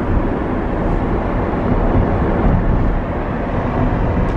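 Steady road and tyre noise of a Tesla electric car driving at town speed, heard from inside the car, with no engine note.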